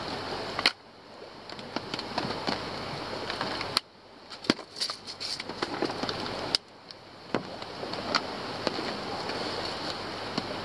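Small clicks and ticks of fishing tackle being handled by hand, a few of them sharp, over a steady outdoor hiss that drops away briefly three times.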